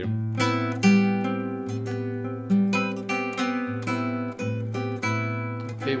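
Nylon-string classical guitar fingerpicked in A minor: a short melody of single plucked notes, about two a second, over a low bass note that keeps ringing underneath.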